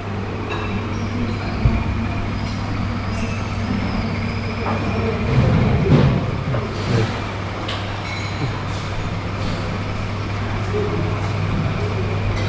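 Dining-room ambience: a steady low hum, with scattered light clicks and knocks and a louder clatter about six seconds in.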